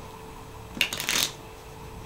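A deck of playing cards being cut and mixed by hand: a short, rapid flutter of card edges about a second in, lasting about half a second.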